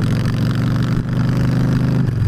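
Victory Jackpot's V-twin engine running steadily at cruising speed, heard from the rider's seat on the moving motorcycle.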